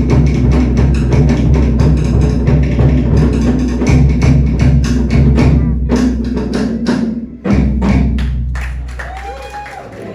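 Tahitian drum ensemble of hollowed-log wooden slit drums and skin-headed drums playing a fast, dense beat. The drumming breaks off sharply about seven and a half seconds in, picks up with a few more strokes and then fades away near the end.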